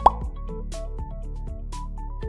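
Light electronic background music of short, evenly placed notes over a steady bass. A quick 'plop' sound effect comes right at the start.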